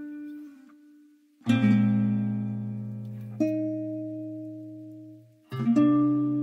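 Background music of slow chords, a new one struck about every two seconds and left to ring and fade.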